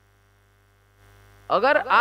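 Faint, steady electrical mains hum through the microphone system during a pause in speech. A man's voice starts speaking about one and a half seconds in.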